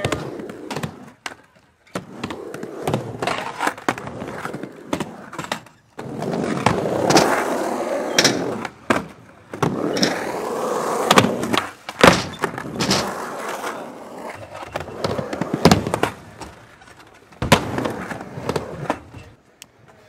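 Skateboard wheels rolling across skatepark ramps in several stretches, broken by many sharp clacks and thuds of the board and landings, the loudest in the second half.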